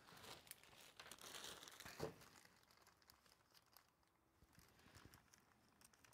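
Faint crinkling and rustling of plastic packaging being handled, with one louder rustle or knock about two seconds in.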